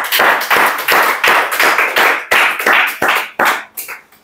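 Several people clapping together, a sustained burst of applause that dies away near the end.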